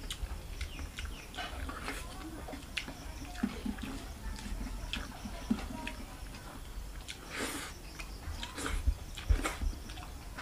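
Close mouth sounds of a person eating rice and fish curry by hand: chewing with wet lip smacks and clicks, and a couple of louder, breathier mouth sounds near the end.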